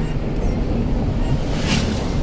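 Steady rumble of road and wind noise inside a moving car's cabin, with a brief rushing hiss near the end.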